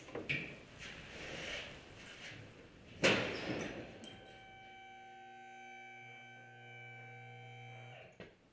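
Faint workshop handling noise and a sharp knock about three seconds in, then a held musical chord from about four seconds that stops suddenly at the end.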